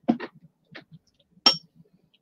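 Scattered short clicks and one sharp clink with a brief high ring about one and a half seconds in.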